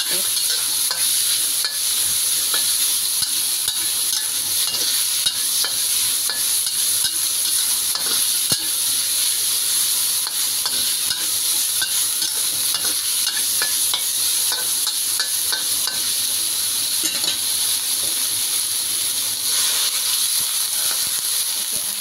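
Minced meat sizzling in hot oil in a wok, with a spatula scraping and clicking against the pan as it is stir-fried. The sizzle is a steady hiss, and the spatula strokes come irregularly throughout.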